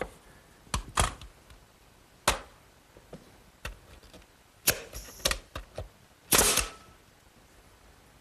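Finish nailer firing 6-penny galvanized finish nails into wooden slats: about seven sharp shots at irregular intervals, the loudest near the end.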